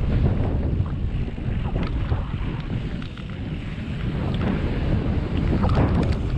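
Wind buffeting the microphone over the rumble of mountain-bike tyres rolling down a dirt trail, with scattered clicks and rattles from the bike that bunch up briefly near the end.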